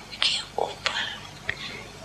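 Soft, whispery speech: a few short, breathy syllables with little voiced tone.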